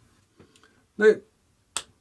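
A small round magnet clicking once onto a whiteboard, a single sharp snap near the end.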